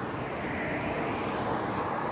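A vehicle going by on the road: a steady rushing noise of tyres and engine.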